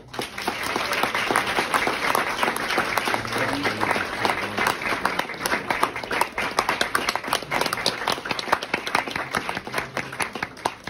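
Small audience applauding, starting suddenly, with one pair of hands clapping close to the microphone.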